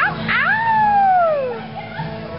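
A single high-pitched howling whoop from a person's voice: it jumps up about half a second in, then slides slowly down in pitch for about a second before fading.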